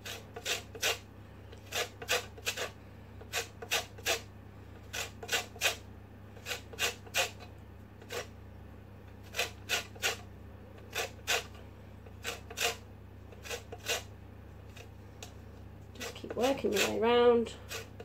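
Lemon zest being grated on a stainless-steel box grater: short scraping strokes in quick runs of three or four, with brief pauses between runs. The strokes stop a few seconds before the end.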